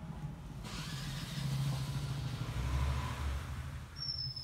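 A motor vehicle's engine passing nearby: a steady low hum swells to its loudest about three seconds in, then fades near the end.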